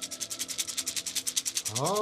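A rapid, even rattle of clicks, about fifteen a second, over faint held tones.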